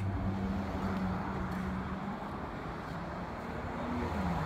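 Engine of a motor vehicle running out of sight, with a steady low drone over road noise; the drone rises a little in pitch near the end.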